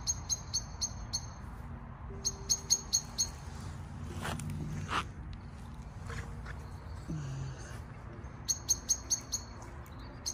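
Common blackbird giving rapid runs of sharp, high chink calls in three bursts of five or six notes: near the start, a little after two seconds in, and near the end. This is the chinking a blackbird makes as it settles to roost at dusk.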